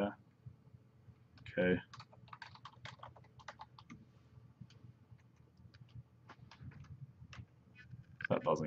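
Computer keyboard typing: a run of irregular, fairly faint keystrokes as a short command is typed, ending with the Enter key.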